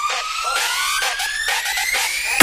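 Build-up in an electronic DJ remix: a siren-like tone climbs steadily in pitch over light, regular percussive hits, with the bass and kick dropped out.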